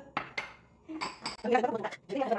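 White ceramic bowls knocking and clinking as they are set down and stacked on a kitchen counter, with a few sharp clinks in the first half-second and more clatter about a second in.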